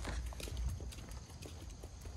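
A Border Collie's claws clicking on stone paving as it walks on the leash, mixed with a person's footsteps. The clicks are irregular, several a second, over a low steady rumble.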